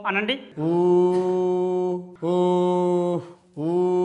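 A man chanting during a yoga breathing exercise, three long held notes at one steady pitch with short gaps between them.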